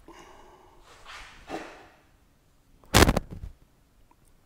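Steel countershaft being pushed out of a Muncie 4-speed countershaft gear cluster, faint scraping of metal on metal, with a loud metallic clank about three seconds in.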